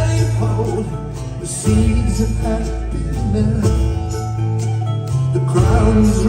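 Live band playing an instrumental passage of a folk-rock song, with drums, upright bass and plucked strings; the music gets louder a little under two seconds in.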